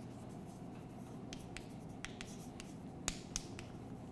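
Chalk writing on a chalkboard: faint, irregular taps and scratches of the chalk as letters are written, with a sharper tap about three seconds in.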